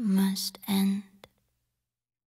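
A woman's breathy, half-whispered voice giving the song's last two short phrases, then a small click, and the sound stops about a second and a quarter in.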